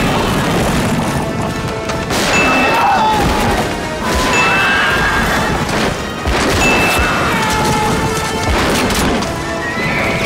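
Film battle soundtrack: horses whinnying several times over galloping hooves and orchestral music, with scattered crashes. The mix jumps abruptly every couple of seconds.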